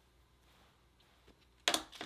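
Near silence: room tone with a couple of faint clicks, then a voice starting near the end.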